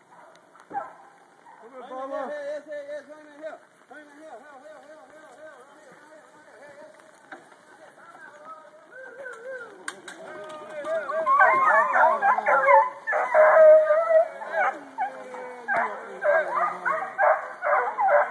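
A pack of hunting hounds baying and howling. The calls are faint at first, then from about eleven seconds in many loud baying voices overlap.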